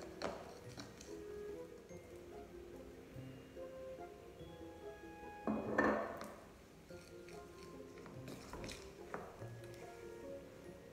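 Light background music of short plucked notes, with a utensil clinking and scraping against a ceramic bowl as maple syrup and icing sugar are stirred into a glaze. The loudest clatter comes about six seconds in.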